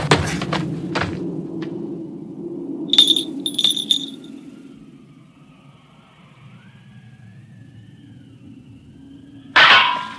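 Cartoon fight sound effects: sharp whip and blade strikes at the start, two ringing metallic clangs about three seconds in, then a fading low rumble and a sudden loud hit near the end.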